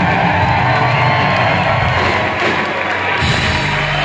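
Live rock band playing, with electric guitars and drums, while the audience cheers over the music.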